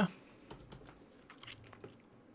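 Faint typing on a computer keyboard: a handful of separate, irregular keystrokes.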